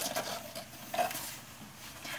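Cardboard mailer box being opened by hand: the flap pried loose and the lid lifted, giving short scrapes, rubs and clicks of cardboard, loudest near the start and about a second in.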